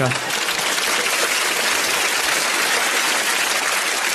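Studio audience applauding, steady clapping.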